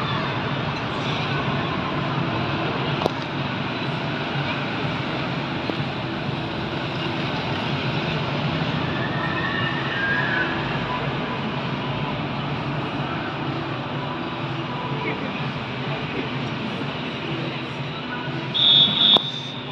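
Busy indoor theme-park ambience: a steady din of crowd voices mixed with the rumble of running ride machinery, echoing in a large hall.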